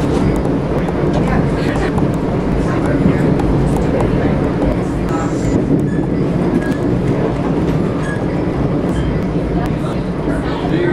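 Passenger train running at speed, heard from inside the car as a steady rumble with a few faint clicks.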